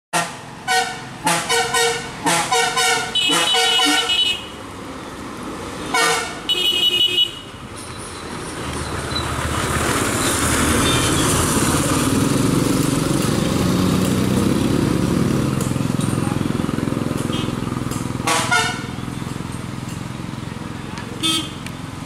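A bus horn sounded in a quick series of short toots, then again a few seconds later, as the bus nears a blind hairpin bend. The bus's diesel engine then grows louder as it climbs past, close by for several seconds, and fades, followed by one more honk.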